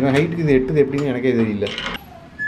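Metal hasp latch on a door being unfastened by hand, giving a few sharp metallic clinks, under a singing voice.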